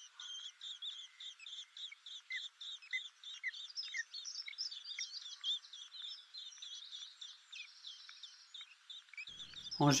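Faint, rapid, thin high-pitched bird chirps running continuously, with a few lower, falling notes mixed in.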